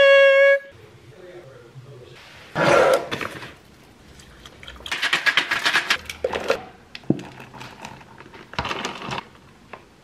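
A woman's voice holds a sung note for a moment at the start. Then come three short bursts of pouring and rattling as milky iced coffee is poured from a shaker into a plastic tumbler.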